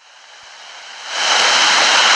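Loud steady hiss of phone-line static on a recorded call, swelling over about the first second and then holding level, with a faint thin high tone running through it.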